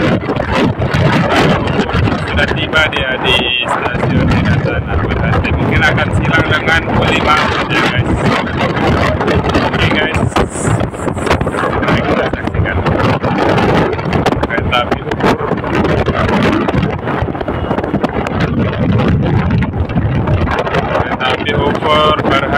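Wind buffeting the microphone of a moving motorcycle, with the engine running underneath.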